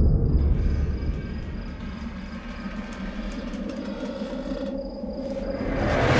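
Horror-trailer sound design: a deep low rumble, loudest at the start and fading, under a sustained eerie tone that swells over the last couple of seconds into a rising whoosh.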